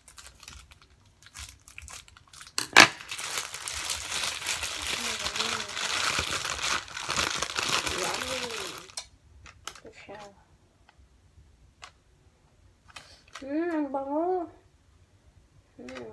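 Thin plastic packaging crinkling and rustling for several seconds as a roll of bacon is pulled out of its bag, after a single sharp click about three seconds in. A few light clicks follow.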